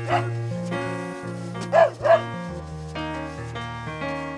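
Three short dog barks, one at the start and two in quick succession a little under two seconds in, over background music of sustained instrument notes.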